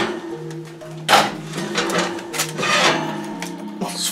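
Soft background guitar music with held notes, and a few clattering knocks of a Dutch oven being handled on the oven rack, the loudest about a second in and again between two and three seconds in.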